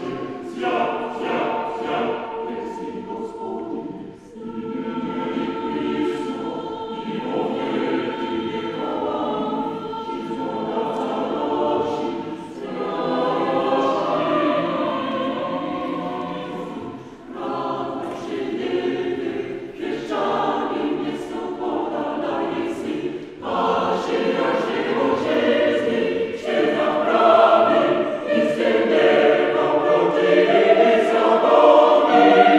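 Mixed choir of women's and men's voices singing in a reverberant church, in phrases separated by short breaths, swelling louder near the end.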